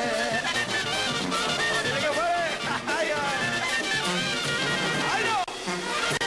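Live Mexican banda music: a brass band with trumpets and tuba playing.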